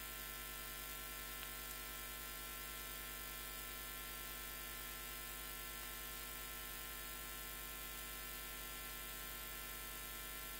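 Steady electrical mains hum with a constant hiss underneath, unchanging throughout: the background noise of the recording chain with nothing else sounding.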